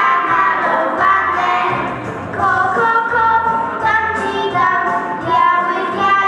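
A group of young children singing a song together in Polish, their voices carried through a microphone into a large room.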